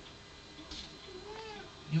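Domestic cat giving one short meow that rises and falls, from a cat stuck up high on a coat rack, looking for a way down.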